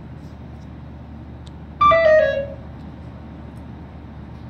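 A steady low engine rumble. About two seconds in, a loud pitched hoot lasts under a second and steps down slightly in pitch.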